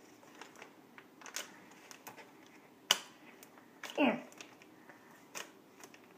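Scissors snipping at a sealed foil minifigure packet: a few separate sharp clicks of the blades, the loudest about three seconds in.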